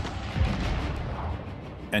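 Battle sounds of gunfire and an explosion: a heavy boom about half a second in that dies away over a low rumble.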